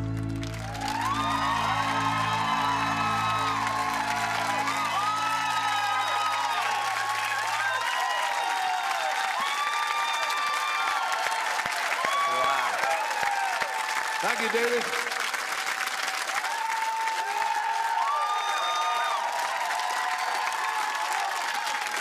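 Studio audience applauding and cheering, breaking out about a second in, just as the song ends. The accompaniment's last low chord fades away under it over the first several seconds.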